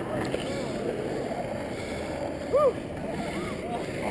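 Longboard wheels rolling over asphalt at speed, a steady rumble heard from a helmet-mounted camera.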